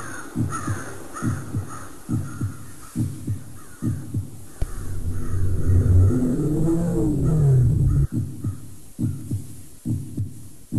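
Spooky Halloween sound-effects track: a steady double-thump heartbeat, a little faster than one beat a second, with crows cawing over it that fade away. In the middle a low rumbling drone with a rising-and-falling moan swells up, then cuts off suddenly about eight seconds in, and the heartbeat carries on.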